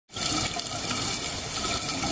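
Underwater ambience picked up by a camera in its housing: a steady rushing water noise that fades in at the start.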